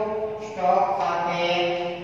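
A man's voice in long, drawn-out, sing-song phrases, held vowels rather than quick talk, with a new phrase starting about half a second in.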